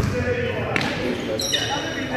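A basketball being bounced twice on a sports hall floor, echoing in the large room, with players' voices and a brief high squeak near the end.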